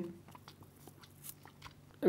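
Faint sipping and a few small scattered clicks as milk is sucked up through drinking straws packed with flavour beads; the straws are hard to draw through.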